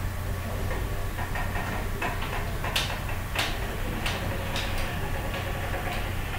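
Background noise on an online call's audio: a steady low hum with a few sharp clicks and knocks, five of them in the second half.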